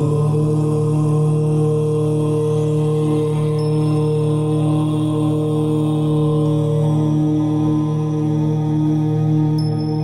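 One long chanted 'Om' mantra, a low voice held on a single steady pitch.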